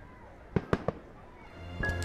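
Three short, sharp pops in quick succession about half a second in. Low background film music fades in near the end.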